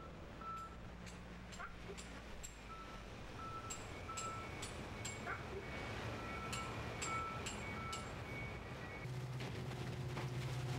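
Electronic warning beeps: a short high tone repeated in groups of two or three, over a low steady hum of truck engines and plant machinery.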